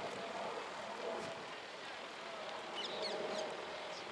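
Outdoor ambience of distant people's voices murmuring, with a bird chirping a few quick descending notes about three seconds in.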